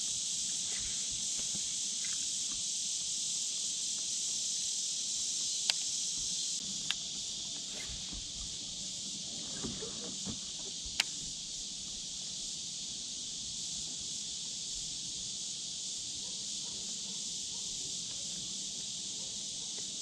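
Steady, high-pitched chorus of insects, with a few sharp ticks in the middle.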